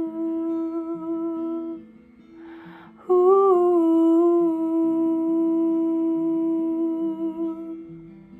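A woman humming two long, held notes of a ballad melody with a breath between them, over softly picked acoustic guitar notes that change beneath the voice.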